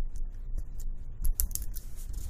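Small clicks and taps of metal AR-15 backup sights being handled and set down on a tabletop. The clicks come in a quick loud cluster past the middle, followed by a brief scrape near the end.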